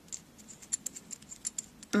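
Small adjusting wheel of a clear plastic tape binding presser foot being turned by hand, giving a run of light, irregular ticks as the guide is wound out to its widest setting.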